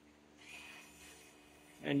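Electric parking brake motors in the rear brake calipers of a 2023 Chevrolet Bolt EUV winding back, faintly, retracting the caliper pistons into service mode on command from a scan tool. The sound comes in about half a second in and fades within a second.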